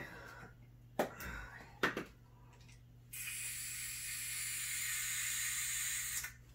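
Butane torch: two sharp clicks, then a steady hiss of the flame for about three seconds, played over the wet acrylic pour to raise cells and pop bubbles.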